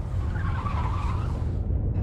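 Deep steady rumble of a simulated earthquake, with a faint wavering tire squeal in the first half.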